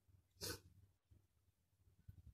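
Near silence with a faint low hum, broken about half a second in by one brief burst of hiss-like noise.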